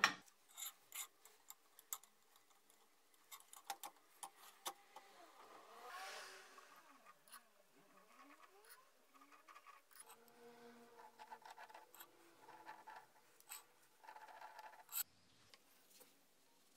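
Light metal clicks and knocks as a homemade pipe-marking jig is set up, then a steel pipe turning on the jig's ball-bearing rollers with faint rubbing and whirring that glides up and down in pitch. A sharp click comes near the end.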